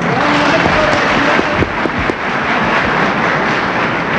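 Hall audience applauding, with a few voices mixed in, loud and steady.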